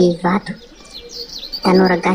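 A voice speaking in short loud phrases, with a small bird chirping a quick run of high notes in the pause between them, from about half a second in.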